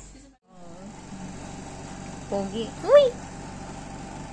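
A steady low hum, broken by a brief dropout just after the start. A short, untranscribed human vocal sound comes about two and a half seconds in, then a louder one about three seconds in that rises in pitch.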